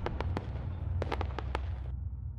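Logo-sting sound effect: sharp, scattered crackles like sparks or firecrackers over a low rumble, fading out near the end.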